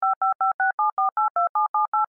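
Touch-tone telephone keypad dialing: a rapid run of about a dozen short two-tone beeps, about seven a second, changing pitch from key to key as a number is dialed.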